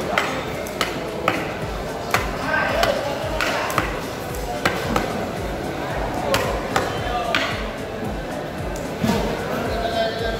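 A large knife chopping through tuna onto a thick wooden chopping block, with sharp strikes coming irregularly about once a second. Background music and voices run underneath.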